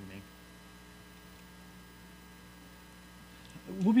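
Steady electrical buzz of mains hum.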